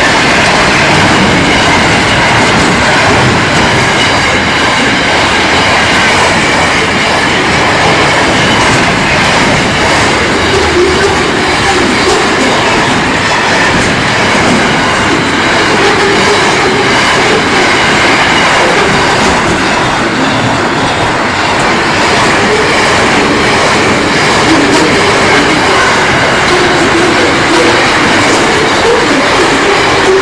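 A long intermodal freight train's loaded container wagons rolling past close by, a loud, steady run of steel wheel and rail noise that does not let up.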